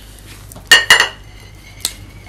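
China teacup clinking against its saucer: two sharp clinks a little under a second in and a fainter one near the end, each with a short ring.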